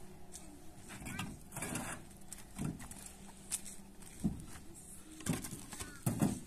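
Hollow concrete blocks being set down on hard dirt and on one another: several short, dull thuds a second or so apart. A voice calls briefly about a second in.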